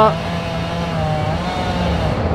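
A chainsaw engine running steadily at high revs, holding one pitch with a slight step in tone just past a second in.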